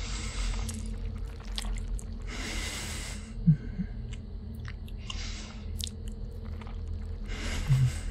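Close-miked wet mouth sounds, sucking and clicking lip smacks, performed as a vampire biting and drinking blood from a neck. Heavy breaths are drawn about every two and a half seconds, with a brief low hum about three and a half seconds in.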